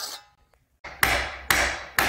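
Three sharp hammer blows on wood, about half a second apart, each with a short decaying ring, after the tail of a saw stroke fades out.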